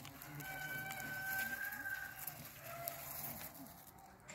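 A farm animal's call: one long call held at a single pitch for about two seconds, followed by a shorter, fainter one.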